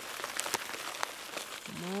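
Rolled grain flakes poured from a bag onto a wooden board, landing in a light, rain-like patter of many small ticks.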